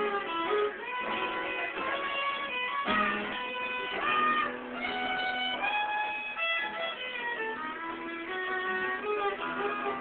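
Fiddle and acoustic guitar playing an instrumental tune live. The fiddle carries the melody in long held notes, some of them bending in pitch, over the guitar's accompaniment.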